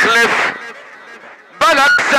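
A man's voice singing drawn-out, wavering vowels through a microphone and loudspeakers, a folk poet's sung vocalise in a poetry duel. One phrase ends just after the start and echoes away, and another begins about a second and a half in.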